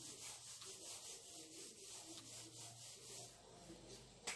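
Whiteboard eraser wiping a whiteboard in quick back-and-forth strokes, about three a second. The rubbing is faint and stops shortly before the end.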